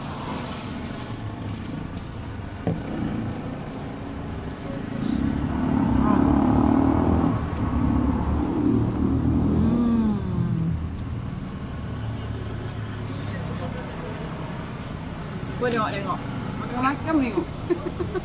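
A motor vehicle's engine running close by, growing louder for about five seconds in the middle and then easing off, over steady low traffic noise. Voices come in near the end.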